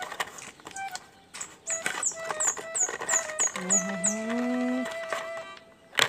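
Clicks and light knocks of a disposable syringe kit being handled and opened. Through the middle, a run of about eight quick high chirps, each falling in pitch, and a short voiced sound that rises in pitch.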